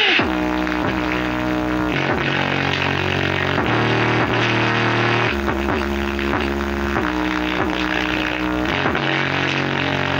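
Music with a heavy bass line played at high power through a bare 5-inch woofer, its cone moving through large excursions.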